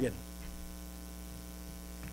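Steady electrical mains hum in the recording, a low buzz of even tones with faint hiss above. A man's voice trails off at the very start.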